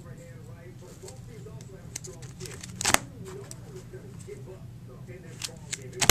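Plastic binder sleeve pages of trading cards being turned: a crackling rustle ending in a sharp snap of the page about three seconds in, with lighter clicks near the end, over a steady low hum.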